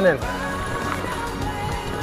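Background music with sustained notes, over an irregular low rumble and knocks from a mountain bike rolling over a dirt trail.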